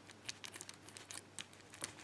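Faint, scattered light clicks and handling noise of a key being worked in the plug of an ABUS Titalium aluminium padlock.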